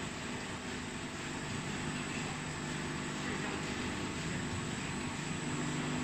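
Plastic packing-net extrusion machine running steadily, a continuous mechanical hum and drone with no breaks as the soft PE mesh sleeve is drawn out.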